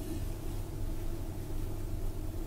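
Steady low hum with a faint even hiss: the recording's room tone, with no speech.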